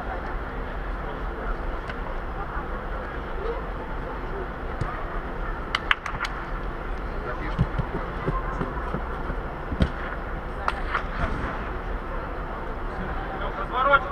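Indoor five-a-side football in a large echoing hall: players' distant shouts and calls over a steady background hum, with a few sharp ball kicks, three in quick succession about six seconds in and more scattered later.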